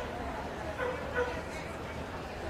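A dog giving two short, high yips about a second in, over a steady murmur of voices.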